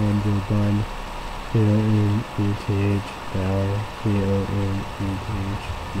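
A man's low, muffled voice talking in short runs of syllables, too unclear for words to be made out.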